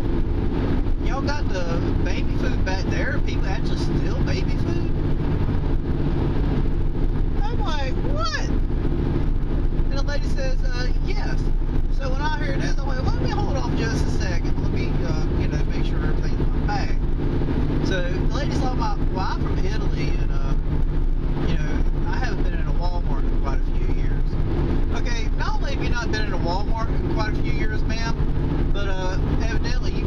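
Steady engine and road drone inside a moving car's cabin, with indistinct voice-like sounds over it.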